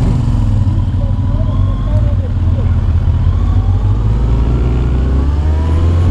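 Motorcycle engine heard from the rider's seat, running at low revs and then pulling away, its note rising over the last few seconds.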